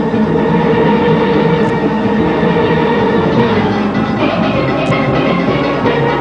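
A full steel orchestra playing a Panorama arrangement: massed steelpans with percussion. A held chord gives way to a busier, brighter passage about three and a half seconds in.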